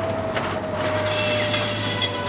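City bus cabin noise while driving: a steady engine drone with a thin whine that slowly falls in pitch, and a single click about a third of a second in.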